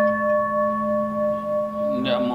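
Singing bowl ringing on after a single strike, a steady chord of several tones slowly dying away; its highest tone fades out near the end.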